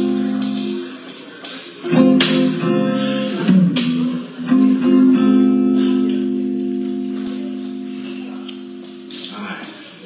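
Guitar playing slow chords, each left to ring; the last chord rings out and fades slowly over about five seconds.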